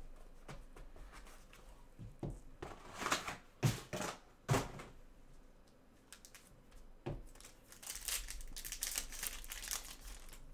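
Hands handling a trading-card hobby box: a few sharp knocks about three to four and a half seconds in, then the crinkling and tearing of a foil card pack wrapper being torn open near the end.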